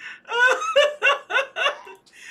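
A young woman laughing hard, a high-pitched laugh in about five quick pulses.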